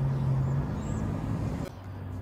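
A steady low mechanical hum over a haze of outdoor background noise; the hum fades about half a second in, and the background drops abruptly near the end.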